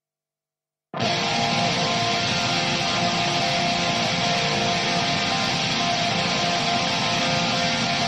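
Nu-metal music: about a second in, a dense wall of distorted electric guitar starts abruptly and holds at a steady level.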